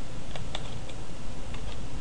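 A few scattered computer keyboard keystrokes, separate clicks rather than fast typing, over a steady background hiss.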